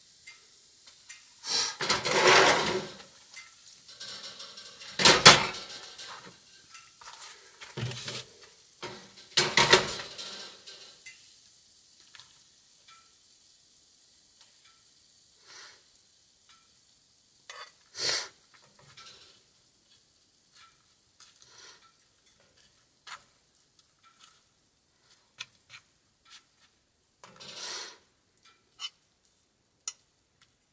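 Metal cookware clattering: a frying pan is lifted off the grate of a camp stove and a utensil scrapes and knocks against it while scooping food out. A run of sharp clanks fills the first ten seconds, then one more knock, and lighter scrapes and taps follow.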